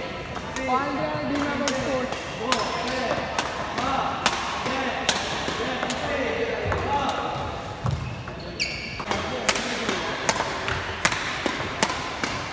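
Badminton rackets striking shuttlecocks in a multi-shuttle feeding drill: sharp hits at an irregular pace, coming faster in the last few seconds, with voices talking in the background and a brief high squeak about nine seconds in.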